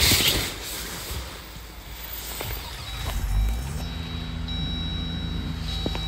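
Jeep Wrangler 4xe plug-in hybrid started with the push button. A short rustle comes first; about three seconds in, a low rumble rises and settles into a steady running hum with a thin high tone above it.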